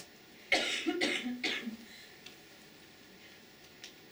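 A person coughing: about three coughs in quick succession, starting about half a second in and over within about a second and a half.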